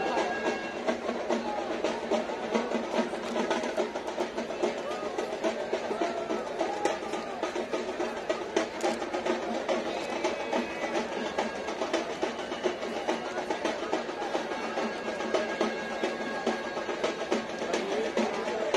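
Rapid, continuous drumming, a dense roll of strokes, over the hubbub of a large crowd.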